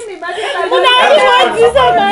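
Several people talking and shouting over one another.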